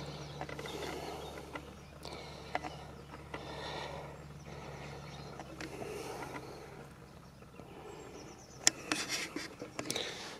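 Faint outdoor background: a low steady hum and soft rustling, with the hum stopping about eight seconds in and a few light clicks near the end.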